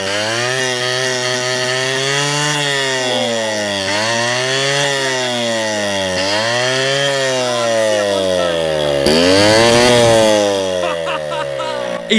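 Small scooter engine running on deodorant aerosol (butane propellant) sprayed straight into its intake manifold, with no carburetor fitted. The engine speed rises and falls in repeated surges about every two seconds, with the strongest, loudest surge near the end before it eases off.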